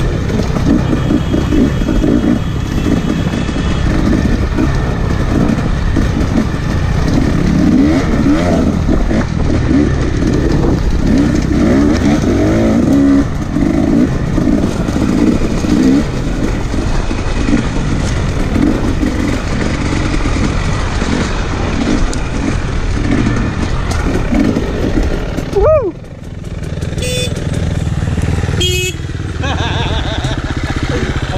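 Off-road dirt bike engine running under load on a trail ride, rising and falling with the throttle. About 26 seconds in it breaks off abruptly, and a quieter engine sound follows.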